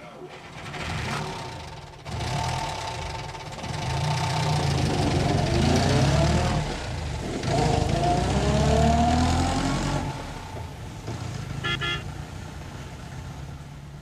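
Car sound effects: an engine running and revving, with its pitch sweeping down and then up, and a short car horn honk about twelve seconds in.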